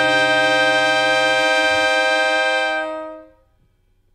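Background music: a sustained chord is held. Its bass note drops out about a second and a half in, and the rest fades away about three seconds in, leaving near silence.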